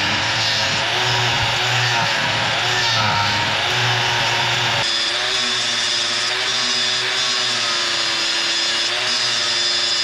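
Angle grinder running under load against spring steel clamped in a vise, a steady motor whine over the hiss of the disc on metal. The sound changes abruptly about five seconds in, when a Bosch angle grinder takes over and grinds along the steel.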